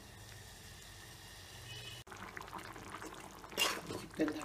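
A metal ladle stirring thick, bubbling chicken curry in a pan, a wet stirring sound. There is a louder scrape of the ladle against the pan about three and a half seconds in. The first half is quieter, with a faint steady hum, and ends in an abrupt cut.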